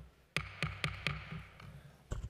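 A run of sharp taps or knocks, about four a second, over a steady low hum in a large room.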